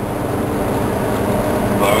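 Steady drone of a semi truck under way, its diesel engine and road noise heard from inside the cab.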